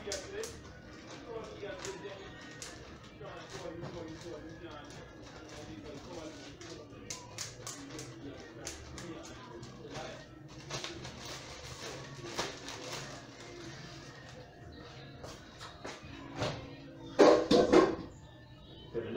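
Background music with voices throughout, over short crinkles and taps of plastic storage bags being handled on a steel counter. There is a louder burst near the end.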